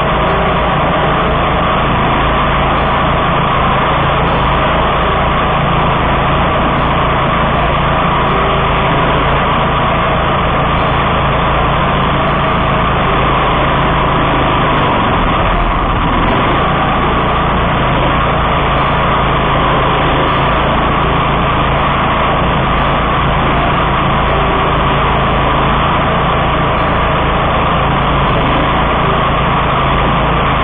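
1999 DR Field and Brush Mower's engine running steadily and close up while the mower cuts through tall, overgrown grass.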